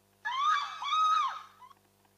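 Two short, high-pitched shrieks from a person's voice, each rising and then falling in pitch, followed by a faint click.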